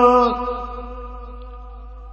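Naat singing: a long held sung note ends about a third of a second in, leaving a quieter steady hum on the same pitch underneath.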